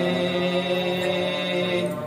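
Male chanting of an Arabic devotional qasida in praise of the Prophet, holding one long steady note.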